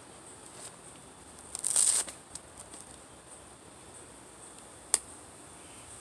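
A soft plush toy car being turned over in the hands, with a short crinkling rustle about two seconds in and a single click near the end. Insects buzz steadily in the background.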